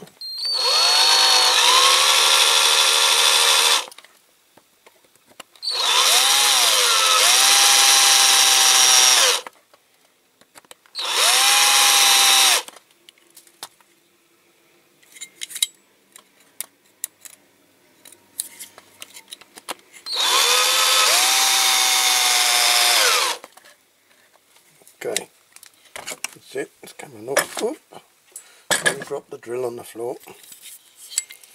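Small electric drill run in four bursts of a few seconds each, its pitch winding up at each start and then holding steady, as it gently drills out a cut-off axle jammed in a diecast zinc-alloy toy body. Light clicks and taps of the part being handled fall in the gaps between runs.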